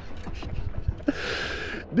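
A man laughing breathily without words, with a long hissing breath starting about a second in, over a steady low rumble.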